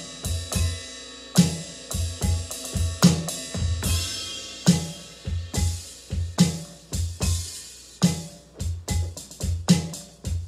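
Drum kit, apparently electronic, played in a slow, steady groove: low bass-drum thumps, snare strikes accented about every second and a half, and cymbal wash.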